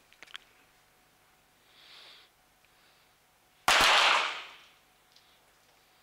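Two .22 target pistol shots fired almost together, about a tenth of a second apart, a little past halfway through, ringing out with about a second of reverberation in the range hall.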